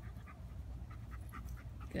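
A Bernese mountain dog panting close by after play, in quick, regular breaths about three or four a second.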